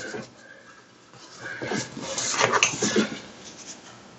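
Folded paper towel rubbing and squeaking across a dry-erase-painted panel, a burst of wiping strokes starting about a second in and dying away about three seconds in.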